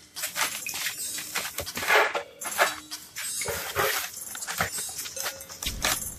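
Ferrets burrowing through crumpled brown packing paper in a cardboard box: irregular bursts of paper rustling and crinkling.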